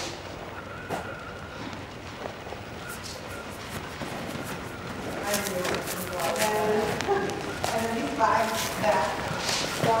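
People talking indistinctly in a large hall, the voices starting about halfway through and growing louder towards the end; before that only low room noise with a few faint knocks.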